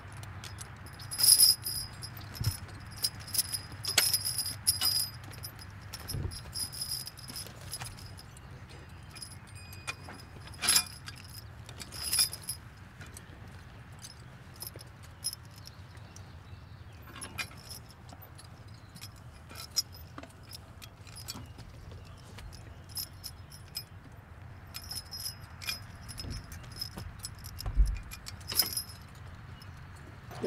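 Steel trace chains and hooks clinking and jingling in irregular bursts as a draft-horse team's tugs are hooked to a horse-drawn plow's eveners, over a steady low hum.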